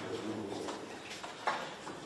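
A man's voice reading aloud in a courtroom trails off in the first half second, followed by a quiet stretch with a single short click about one and a half seconds in.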